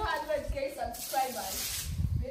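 People talking, with a hiss of noise during the second half.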